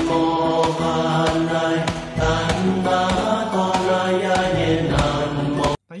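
Loud chanting, a sustained mantra-like drone of sung tones, over a steady beat of sharp strikes about every two-thirds of a second. It cuts off abruptly near the end.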